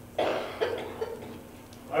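A man coughs sharply once, just after the start, then clears his throat with a couple of shorter sounds; a spoken word begins at the very end.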